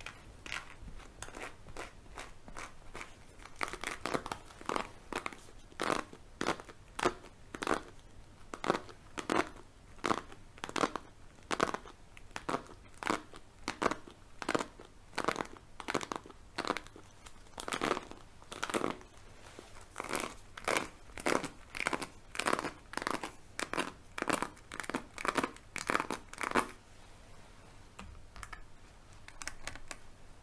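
A hairbrush stroked again and again close to the microphone, a swish about twice a second, stopping a few seconds before the end.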